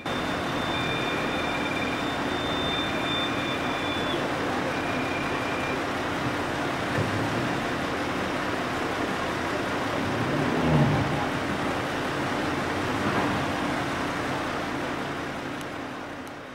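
Steady running of a fire engine's motor at the scene, a constant low hum under a broad, even hiss. A brief louder low swell comes about eleven seconds in.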